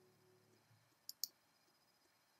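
Faint background music ends about half a second in. Then near silence with two short, sharp clicks close together, about a second in.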